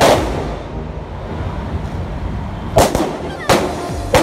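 Firecrackers going off: a sharp bang right at the start and two more near the end, with the hissing spray of a ground firework throwing sparks in between.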